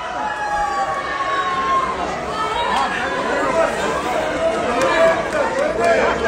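A small group of people shouting and cheering together over each other in celebration of a goal, with one long, drawn-out shout in the first two seconds.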